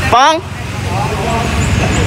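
Low, steady rumble of a running motor vehicle engine, with a short rising voice just at the start.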